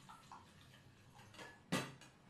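Steel kitchen vessels clinking lightly as they are handled on a counter, with one sharper clank near the end.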